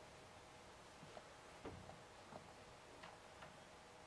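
Near silence with a few faint, irregularly spaced small clicks as a wooden turntable carrying a LEGO model is turned by hand.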